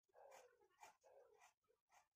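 Near silence, with the faint scratching of a pencil drawn along a ruler on graph paper.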